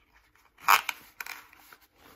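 Kore Essentials X7 ratchet belt strap sliding through its buckle: a short, loud ratcheting rasp about two-thirds of a second in, then a softer second rasp.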